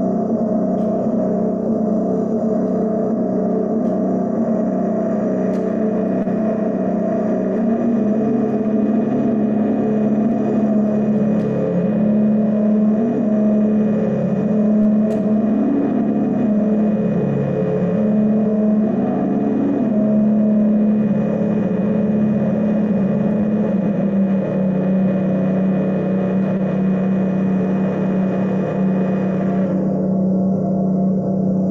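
Live electronic drone music: a steady low tone with layered overtones, held throughout, its pitch bending up and down in slow glides through the middle before settling back to a steady hum.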